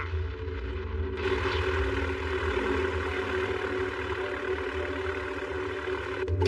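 A steady engine-like drone with a low rumble; a rushing hiss joins it about a second in.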